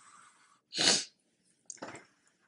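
A short, sharp breath noise from the speaker about a second in, with a fainter one near the end.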